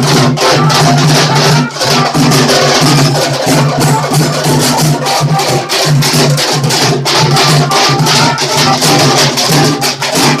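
A street drum band of large steel-shelled drums beaten with sticks, playing a fast, loud, continuous rhythm, over a steady low hum.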